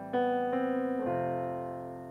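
Slow, soft piano music: a few chords are struck within the first second and then left to ring and fade.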